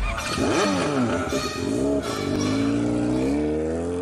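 Revving engine sound effect in a funk mix: the engine note rises and falls about three times, over a steady low drone.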